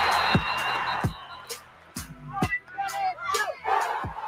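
A crowd cheering over music with a beat. The cheering is a dense roar for about the first second. After that, separate voices whoop and shout over the beat.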